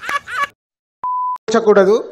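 A single steady electronic beep lasting under half a second, about a second in, set off by dead silence on both sides; a censor-style bleep edited into the soundtrack. A man's voice is heard just before it and another voice just after.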